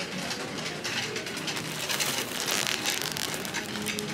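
Plastic bag of jumbo cotton balls crinkling as it is handled close to the microphone, a dense crackle throughout.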